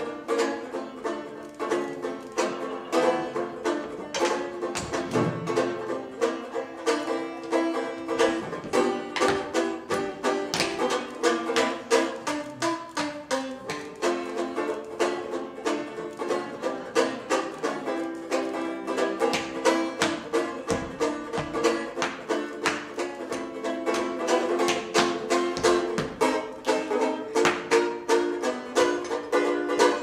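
A lively tune picked on a small banjo-like string instrument, accompanied throughout by the steady rhythmic clicking of tap shoes on a wooden stage from a seated tap routine.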